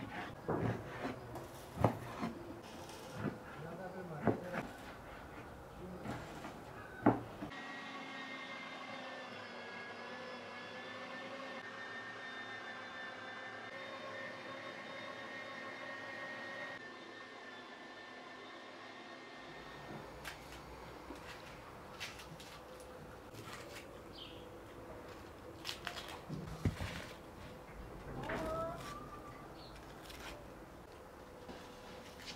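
Cleaver chopping raw beef on a wooden cutting board, a few sharp knocks. Then an electric meat grinder running steadily with a motor whine for about twelve seconds as it minces the beef. Then light knife clicks and rustles as onions are peeled.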